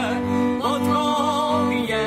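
Folk tune played on violins, with long held bowed notes wavering in vibrato and a man singing over them.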